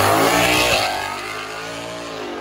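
Twin-turbocharged 2019 Ford Mustang GT with a 5.0 Coyote V8 accelerating hard away down a drag strip. Its engine note fades steadily as it pulls into the distance.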